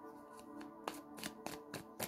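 A deck of tarot cards being shuffled by hand, a run of sharp card clicks starting about half a second in and growing louder, about three to four a second. Soft ambient music with steady held tones plays underneath.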